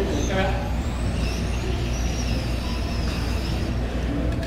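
Electric 1/10-scale RC touring cars running laps on an indoor track: high-pitched motor whines rising and falling as they speed up and slow down, over a steady low hum.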